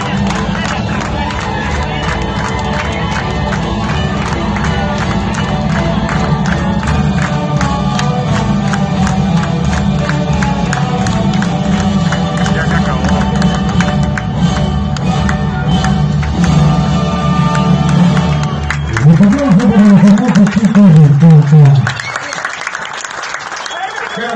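Recorded dance music with a steady beat. About 19 seconds in, a loud voice rises over it, and the music ends about three seconds later.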